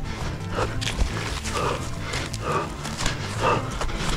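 A running orienteer's hard, rhythmic breathing, about one breath a second, over the quicker fall of running footsteps.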